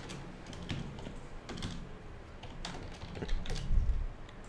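Typing on a computer keyboard: scattered key clicks at an uneven pace, with a heavier low knock near the end.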